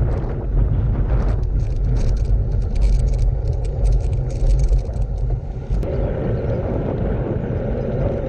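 Gravel bike tyres crackling and crunching over a loose dirt track, with heavy wind rumble on the handlebar-mounted action camera's microphone. About six seconds in the crackling stops and the tyre noise turns to a smoother, steadier hum as the surface changes to asphalt.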